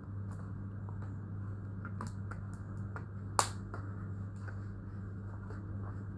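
A thin plastic drink bottle being handled, giving scattered sharp clicks and crackles at an uneven pace, with the loudest about three and a half seconds in, over a steady low electrical hum.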